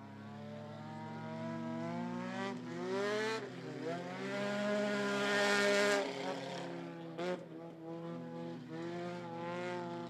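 Front-wheel-drive stock cars racing: several engines revving together, their pitch dipping as they lift off about three and a half seconds in and again near seven seconds, then climbing back under throttle. The engines are loudest around five to six seconds in.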